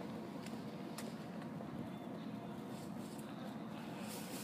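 Steady low hum of city street ambience with distant traffic, broken by a few faint ticks in the first second.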